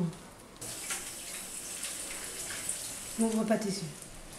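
Water running steadily from a tap into a sink, starting about half a second in and stopping shortly before the end.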